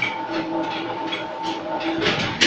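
Automatic eyelet-setting machine running, a steady hum under a quick, uneven clacking of strokes, about two to three a second.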